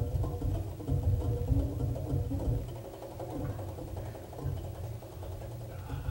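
Live jazz band playing, dense and busy, with a rumbling low end under short mid-range notes; it eases off somewhat about halfway through.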